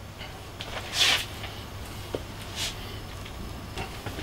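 Two short, soft hissing swishes and one light tick as toasted buns are lifted off a flat-top griddle, over a low steady hum.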